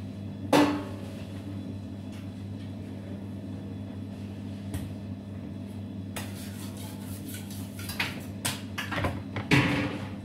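Metal knocks and clatters on a stainless steel worktable as pizza dough is portioned by hand: one sharp knock about half a second in, then a run of rustling and several clattering knocks near the end. A steady low hum runs underneath.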